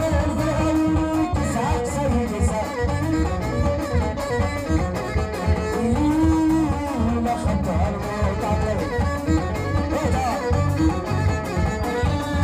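Live band playing amplified traditional folk music with a steady, driving beat: string instruments carrying the melody over drums and hand percussion.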